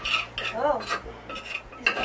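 A metal spoon stirring in a metal cooking pot, clinking and scraping against the pot's sides about every half second.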